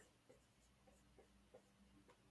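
Faint dry-erase marker writing on a whiteboard: a handful of short, soft strokes and taps as symbols are drawn, over a low room hum.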